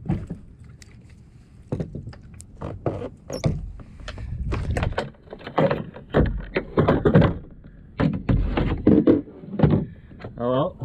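Irregular knocks and thumps of a freshly gaffed Spanish mackerel and fishing gear against the kayak hull as the fish is brought aboard, getting busier and louder in the second half.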